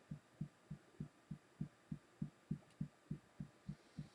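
Fingertips tapping on the collarbone point in EFT tapping: faint, dull thumps in an even rhythm of about four a second.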